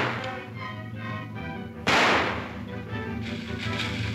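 Background music with a single loud gunshot about two seconds in, a sharp crack that fades over about half a second.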